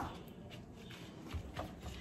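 Quiet kitchen room tone with low hum and a few faint soft taps about one and a half seconds in, from gloved hands handling soft dough.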